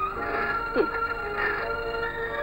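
Film background score: sustained notes held by several instruments, with a short falling slide of pitch a little before the middle.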